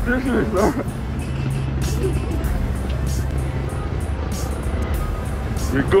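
Music with a low bass line whose notes change every second or so, heard against street noise, with a few spoken words at the start and at the very end.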